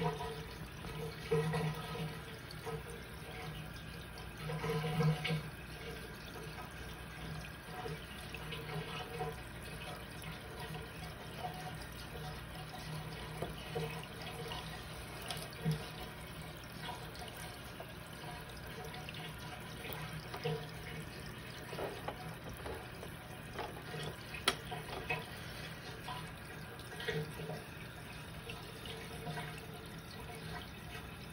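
Aquarium water gurgling and bubbling, with irregular louder bursts and small pops over a low steady hum.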